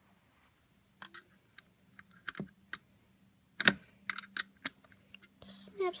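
Snap Circuits pieces being pressed onto the plastic base grid, their metal snap connectors clicking into place: a run of sharp, irregular clicks, the loudest a little past halfway.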